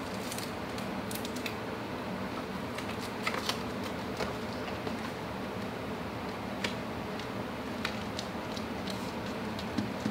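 Photo prints being handled and pressed onto a wall: scattered faint paper clicks and rustles over a steady room hum.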